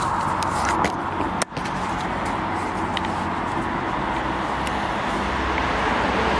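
Steady outdoor hum of road traffic, with a brief dropout about a second and a half in and a few faint clicks.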